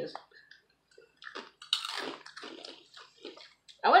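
Crunching and chewing of hard, crunchy protein puffs, in a run of irregular bursts lasting about two seconds.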